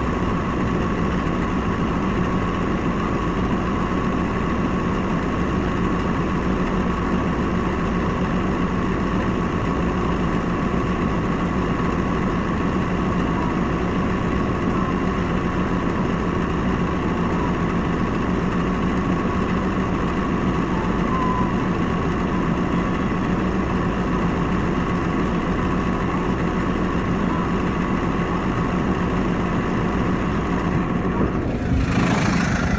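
New Holland compact tractor's diesel engine running steadily at idle, heard up close from the operator's seat: a low hum with a faint higher whine over it.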